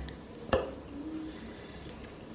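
A single sharp click or knock about half a second in, over a quiet small-room background.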